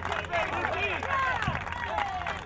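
Several voices calling out over one another across a ball field, with no clear words.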